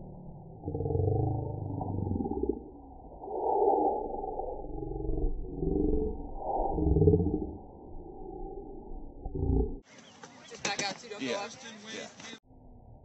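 Slowed-down slow-motion sound of a pole vault: voices and movement stretched into deep, drawn-out growls. About ten seconds in it gives way to normal-speed sound with a few sharp clicks for a couple of seconds.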